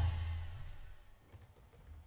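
A music track's last drum beat dies away, then faint typing on a laptop keyboard: a few soft key clicks in the second half.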